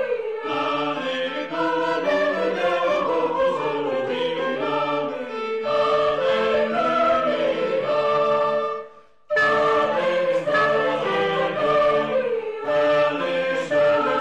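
A choir singing, with sustained chords. It breaks off briefly about nine seconds in, then resumes.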